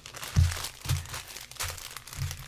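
Clear plastic wrapping and small plastic bags of drills crinkling as hands handle and press down a diamond painting canvas, with a few soft thumps against the table.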